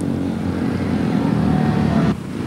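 Speedway motorcycles' single-cylinder 500 cc methanol engines running, a steady low engine drone.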